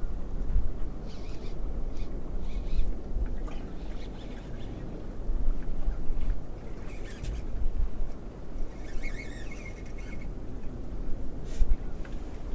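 Wind on the microphone and water around a small open boat, with a few sharp clicks from the spinning rod and reel as a hooked fish is played.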